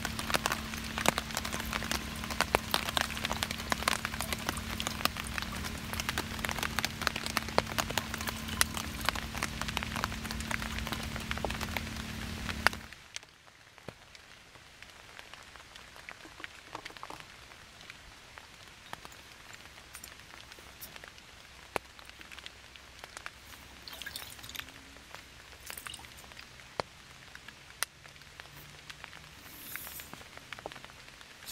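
Rain pattering on a Kelty camping tarp, heard close from underneath: a dense, even patter of drops with a faint steady hum under it. About 13 seconds in it drops abruptly to a quieter, sparser patter of rain and scattered drips.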